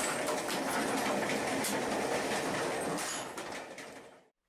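Train running at speed, heard from inside a mail car with its side door open: a steady rumble with irregular clatter of the wheels on the rails. It starts abruptly and fades away near the end.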